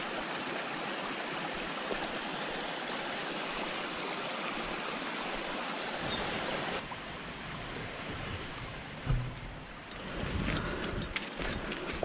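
Flowing stream water, a steady rushing hiss, with a short run of bird chirps about six and a half seconds in. The water sound drops abruptly to a fainter level after that, and a few low thumps of movement follow near the end.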